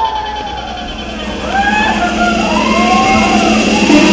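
Siren-like wailing effect in a DJ's electronic dance mix over the club sound system: several overlapping tones swooping up and down, growing louder as the track builds.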